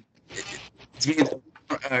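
A hand brushing against a headset microphone: a short scratchy rustle about half a second in, followed by brief halting speech sounds.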